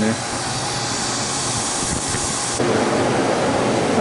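A steady hiss that cuts off about two and a half seconds in, giving way to the steady whir of refrigeration condensing-unit fans running on top of a walk-in cooler.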